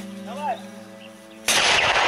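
A mortar firing a single round: one sudden, loud blast about one and a half seconds in.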